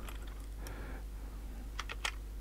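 A few clicks of computer keyboard keystrokes near the end, over a faint steady background hum.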